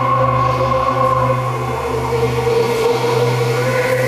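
Ambient electronic drone music: a steady low drone under sustained higher tones that waver slowly in pitch.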